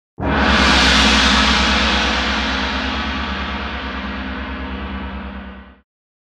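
A single loud struck hit, like a gong, ringing on with a pulsing low hum and fading slowly over about five and a half seconds, then cutting off abruptly just before the end.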